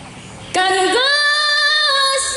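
A woman singing into a handheld microphone: her voice comes in about half a second in, glides up and settles on a long held note.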